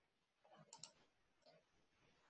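Faint computer mouse clicks: a quick pair a little under a second in, then a single softer click at about one and a half seconds.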